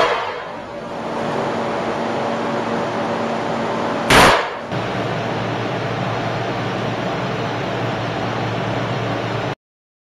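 Two shots from an over-and-under shotgun, one right at the start and one about four seconds in, each a loud, sudden bang. Between and after them a steady noisy background with a faint hum, which cuts off abruptly near the end.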